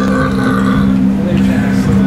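A loud, steady low hum of two held tones, with people's voices over it.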